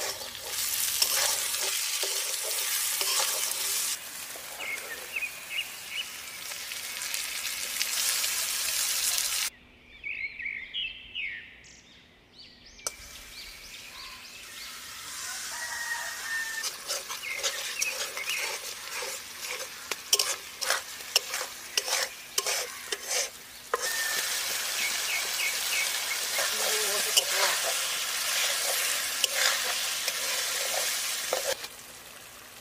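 Spice paste frying and sizzling in a steel kadai, stirred with a metal spatula that clacks and scrapes against the pan. The sizzle drops off for a few seconds about ten seconds in, then returns.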